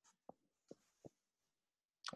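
Near silence from a video call whose audio has dropped out, broken only by three faint, very short blips in the first second or so.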